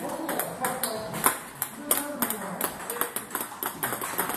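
Table tennis balls clicking off bats and bouncing on tables, many sharp, irregular ticks from several tables at once.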